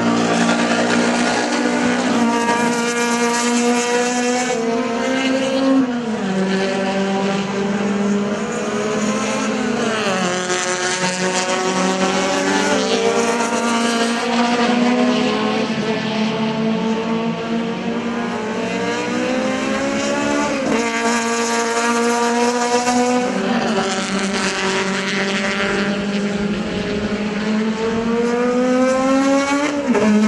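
Touring race car engines running hard, the engine note climbing under acceleration and dropping back at gear changes several times.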